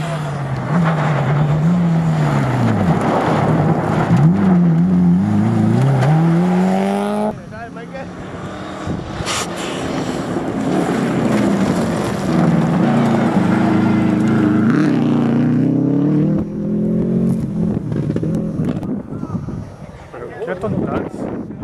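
Subaru Impreza rally car's turbocharged flat-four engine at full throttle on a gravel stage, its revs climbing and dropping again and again through gear changes and lifts. The sound cuts abruptly about seven seconds in to a second pass of the same kind, which fades near the end.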